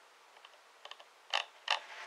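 Computer mouse clicking while a web page is scrolled: a few faint ticks, then two sharp clicks about a third of a second apart in the second half.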